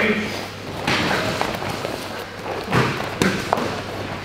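Sparring strikes landing: gloved punches and kicks hitting gloves, guards and bodies in a series of dull thumps, one about a second in and three close together near the end, over background voices.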